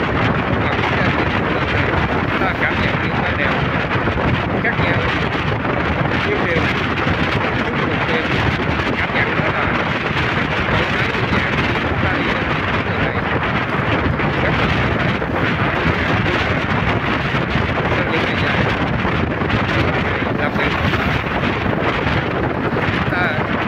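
Steady wind rushing over the microphone of a moving motorbike, an even roar with the bike's running and road noise blended into it.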